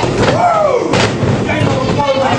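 Sharp impacts in a wrestling ring, a loud crack about a second in, from wrestlers striking each other or hitting the mat. A shouted voice rises and falls between the hits.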